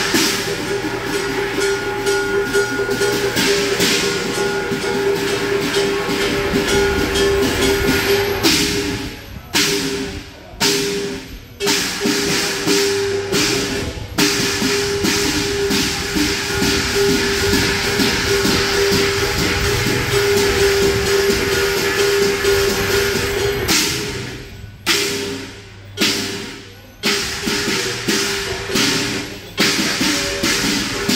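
Chinese drum and cymbal ensemble playing the accompaniment for a qilin dance: fast, continuous drumming and cymbal crashes with a steady ringing tone underneath. Twice the roll breaks into a few separate, heavy accented strikes, about ten seconds in and again around twenty-five seconds.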